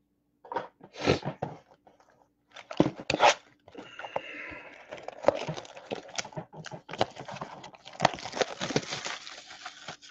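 Trading-card packaging, plastic wrap and foil pack wrappers, being crinkled and torn open by hand: a few short rustling tears, then steady crinkling from about three and a half seconds in.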